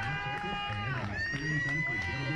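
Voices, with two long drawn-out notes held almost level, one lower in the first half and a higher one starting just past halfway.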